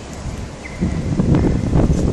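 Wind buffeting the microphone: a low rumble that gets much louder about a second in.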